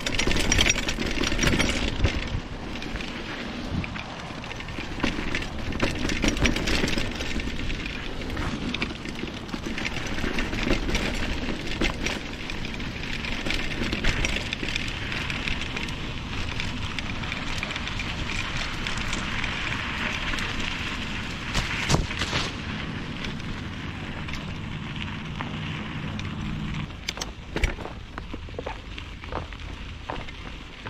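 Mountain bike riding on a dirt trail, heard from on the bike: steady tyre rumble and wind noise with frequent rattles and knocks as the bike goes over bumps. It eases off near the end.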